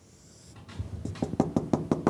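Marker tip tapping dots onto a whiteboard in quick succession, a run of sharp taps at about six a second that starts under a second in.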